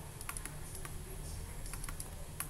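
Irregular light clicks and taps of a stylus on a tablet screen as words are handwritten, over a steady low background hum.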